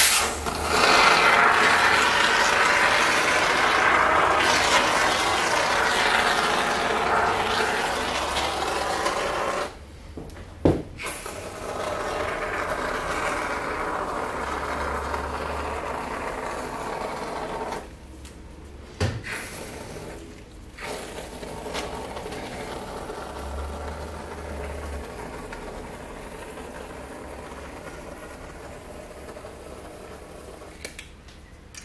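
An aerosol can of expanding foam filler hisses through its straw nozzle in three long sprays, with a click in each short break. The last spray is weaker and fades as the can runs empty.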